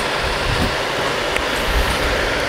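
Steady rushing background noise with a low rumble underneath and no clear rhythm or tone.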